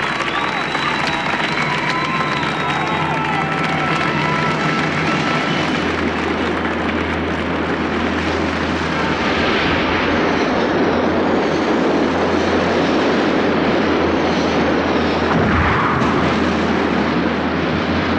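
A crowd cheering and shouting, giving way after a few seconds to the loud, steady engine noise of a cartoon spacecraft flying overhead, with a deep rumble underneath.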